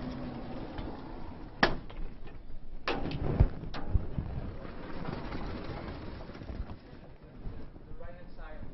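Vertical sliding chalkboard panels being moved, with a low rumble and a series of sharp knocks between about one and a half and four seconds in, the loudest about three and a half seconds in, as the boards bump against their stops.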